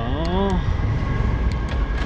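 Steady low rumble of wind on an action camera's microphone while cycling, with a faint steady high whine underneath. A man's voice trails off in the first half-second.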